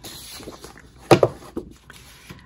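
Cardstock sheets being slid and handled on a table, with a sharp tap about a second in as a sheet is set down.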